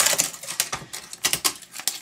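Rapid, irregular clicks and knocks of a component being pried and pulled out of a flat-screen monitor during hand disassembly.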